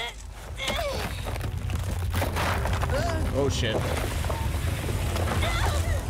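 Soundtrack of an animated fight scene: brief shouts and grunts from the characters over a steady low rumble and dense noisy action effects, which thicken about two seconds in.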